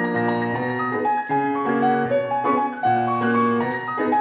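Solo grand piano playing a lively classical étude: quick running notes in the right hand over held bass notes.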